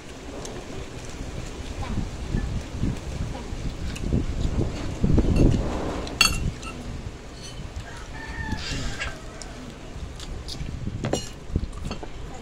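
Children eating by hand close to the microphone: irregular rustles, low thumps and a few clicks from hands, food and a spoon on plates. A short animal call sounds in the background about eight to nine seconds in.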